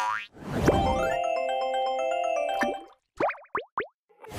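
A short playful music sting for an animated logo: a quick rising swoosh, then a bright cluster of notes for a couple of seconds. It ends with three quick falling cartoon 'boing' slides near the end.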